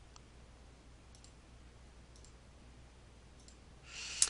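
Near silence: room tone with a few faint computer mouse clicks spread through it.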